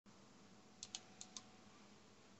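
Four faint, sharp clicks in two quick pairs, about a second in, over low room hiss: keys or buttons being pressed on a computer.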